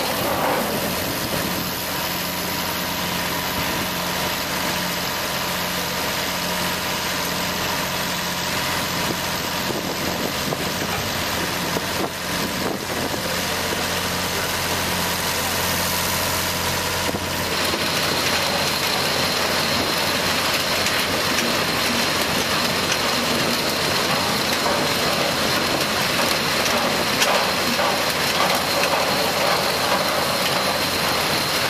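Diesel engine of a sugar cane elevator-loader running steadily at low speed. Just past halfway a thin high whine joins in along with more mechanical noise.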